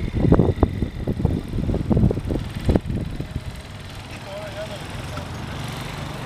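A motorcycle engine running at low revs. In the first half it is broken up by irregular voices and knocks; from about halfway it settles into a steady hum.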